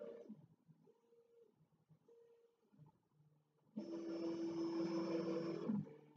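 Prusa i3 MK3S 3D printer's stepper motors moving the print head in its start-of-print calibration and test-line routine: a few short, faint whines, then about four seconds in a much louder steady whine for about two seconds that cuts off suddenly.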